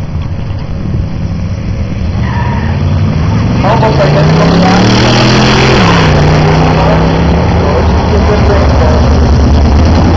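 Model A rat rod with a 327 Chevrolet small-block V8, racing a pickup truck off the drag-strip start line and accelerating hard down the track. The engine note climbs steadily in pitch and grows loud as the cars pass, drops sharply about six seconds in, then holds a steady lower note as they run away.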